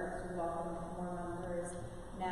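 A person's voice holding long, steady tones, echoing in a large stone church.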